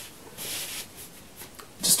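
Cardboard LP sleeve rubbing and sliding as it is handled and lifted, with a soft scuff about half a second in.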